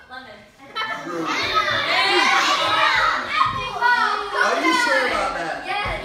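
A roomful of children talking and calling out all at once, starting after a short lull about a second in.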